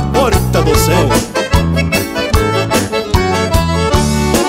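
Instrumental break of southern Brazilian gaúcho dance music led by a button accordion (gaita), over a steady beat.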